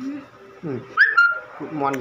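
Wordless human vocal sounds: a closed-mouth "mm" hum, then short falling voiced sounds, with a brief high-pitched squeal-like tone about halfway through.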